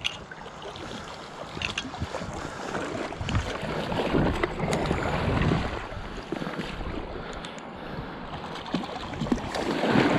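River water rushing and splashing close to the microphone, with wind buffeting; the rush swells about halfway through, and a few sharp clicks.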